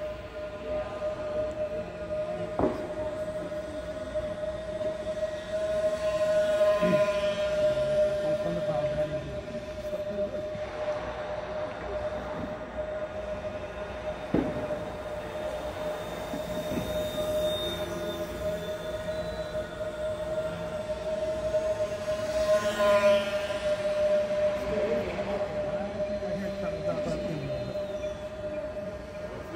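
Twin 10 mm brushless motors and propellers of a small foam RC model warplane buzzing steadily as it circles. The buzz swells and bends in pitch as the plane passes close, about a quarter of the way in and again about three-quarters of the way in.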